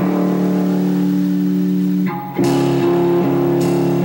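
Live rock band playing, electric guitars and bass holding sustained chords. The sound briefly drops away a little over two seconds in, then comes back with a new chord struck.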